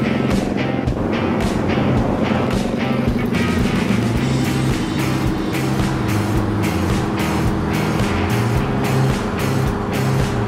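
Scania 141's V8 diesel engine running steadily under way, mixed with background music that has a bass line and a steady beat.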